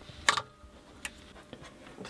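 One sharp click about a third of a second in, then two fainter ticks, as hands handle guitar effects pedals and patch-cable plugs on a pedalboard.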